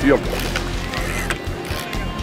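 Steady low hum of a fishing boat's engine with a few scattered clicks, under background music.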